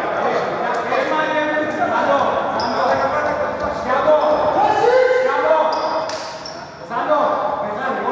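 Basketball game in a large, echoing indoor hall: the ball bouncing on the hardwood court, with short sharp knocks and brief high squeaks, amid players' voices calling out.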